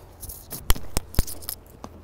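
A duffel bag being grabbed and lifted: a few sharp, irregular clicks and knocks, likely its strap hardware against the stairs, over rustling fabric.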